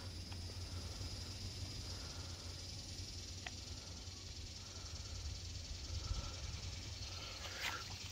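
Quiet outdoor background: a steady low rumble under a faint, even high hiss, with one faint click near the middle.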